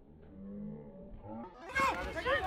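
Several voices calling and shouting: low, drawn-out calls first, then loud high-pitched shouts breaking out near the end.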